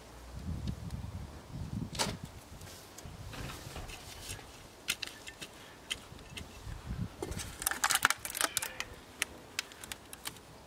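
Hand trowel digging into stony garden soil, with hands pressing the soil down: dull scuffs at first, then a run of sharp clicks and scrapes as the blade hits stones, loudest about eight seconds in.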